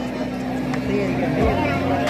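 A crowd of people talking and calling out over a steady low hum.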